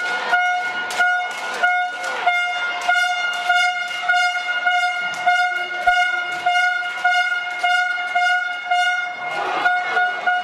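A horn held on one steady note almost without a break, over sharp beats struck about every 0.6 seconds, the kind of horn-and-beat noise spectators make in the stands.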